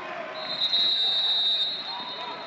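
Referee's whistle: one long, steady, shrill blast starting about half a second in and lasting over a second, blown to end a football play. Faint voices of players on the field sound beneath it.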